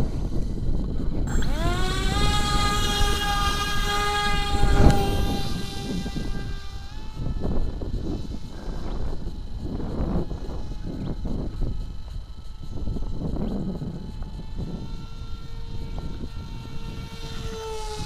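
Quantum 2204 2300KV brushless motor spinning a Gemfan 6045 propeller on 3S, running at about half throttle. It spools up about a second in as a rising whine, then holds steady, fades after several seconds, and comes back fainter near the end. Wind rumbles on the microphone throughout.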